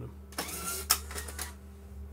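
Clear adhesive tape being pulled off its roll: a noisy rasp lasting about a second, with a sharp click near the middle of it.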